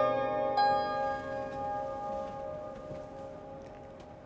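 Lyre (ライアー) music ending: plucked strings ringing on. One last note is plucked about half a second in, then the chord rings and fades steadily away.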